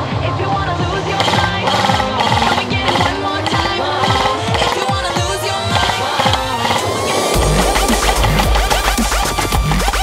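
Electronic dance music soundtrack: a rising sweep builds for several seconds, then a heavy bass drop comes in about seven seconds in.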